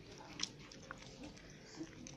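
Faint chewing: a few soft mouth clicks over quiet room tone.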